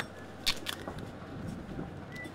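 Short handling sounds from a diver tightening the laces of his rubber-soled dive boots: a couple of quick rustling clicks about half a second in, then fainter ones, over a low steady hum.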